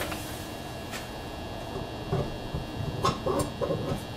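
A few light knocks and clicks as a cast aluminium centrifuge rotor bowl is handled and set back onto the centrifuge, over low room noise.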